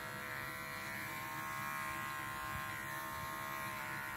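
Electric dog-grooming clippers running steadily with an even buzz.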